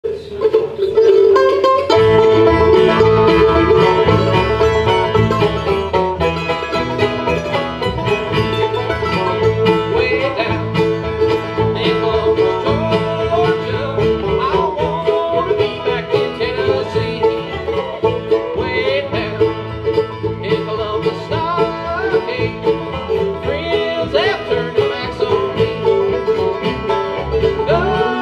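Acoustic bluegrass band of banjo, mandolin, fiddle, acoustic guitar and upright bass playing an instrumental introduction in steady time. The bass and full rhythm come in about two seconds in.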